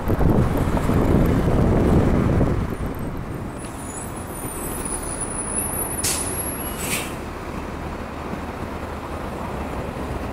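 Transit bus engine running loud for the first two and a half seconds, then easing to a steady idle. A thin high squeal comes around four to five seconds in, and two short, sharp air releases about a second apart follow from the stopped Gillig Phantom bus's air system.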